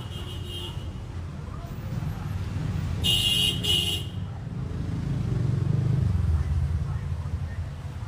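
Low rumble of street traffic, swelling about five seconds in, with two short high-pitched beeps about three seconds in.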